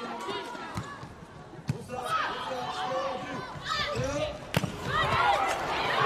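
A volleyball being struck in an indoor arena: a few sharp ball contacts, the loudest about four and a half seconds in, over crowd noise and shouting voices.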